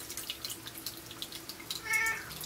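Faint scattered clicks over low room noise, then near the end a short, high-pitched meow from a domestic cat.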